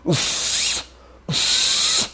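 A man making two long hissing blows with his mouth close to the microphone, each under a second, with a short pause between them.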